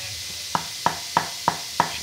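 Five light, evenly spaced taps, about three a second, of a screwdriver on the commutator hooks of a rewound RS550 DC motor armature. The hooks are being knocked shut onto the wire ends so the winding makes contact.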